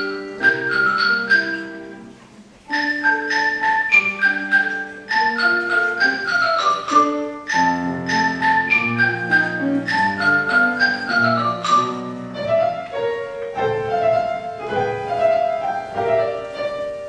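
Xylophone played with two mallets, a melody of quick struck notes over a piano accompaniment. The playing dies away briefly about two seconds in, then resumes.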